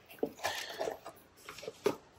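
Faint rustling and light taps from a cardboard ignition-coil box being handled, with a sharper tick near the end.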